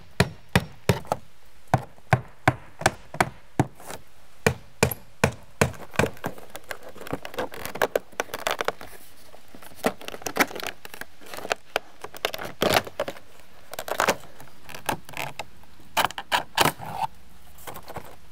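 Claw hammer driving nails into vinyl J-channel and siding: a steady run of sharp blows, two or three a second, for about the first five seconds. After that come lighter, irregular clicks and knocks of vinyl siding panels being pushed up and snapped into place, with a few quick clusters of taps.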